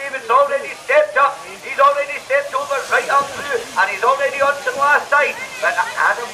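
Speech only: a commentator talking fast and without a break.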